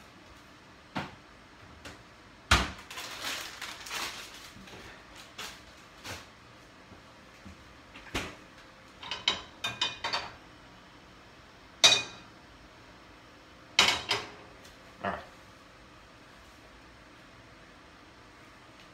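Stainless steel skillet knocking and rattling against a gas stove's metal grate as it is lifted, tilted to swirl the oil and set back down. The knocks come singly and in short clusters, a few with a brief metallic ring, the loudest near the middle. The last few seconds hold no knocks.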